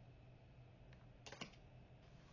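Near silence: room tone, with a faint tick about a second in and a short cluster of light clicks just after.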